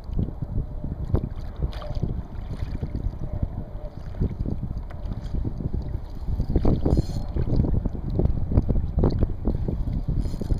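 Wind buffeting the microphone, with small choppy waves slapping and lapping irregularly against a plastic kayak hull, busier in the second half.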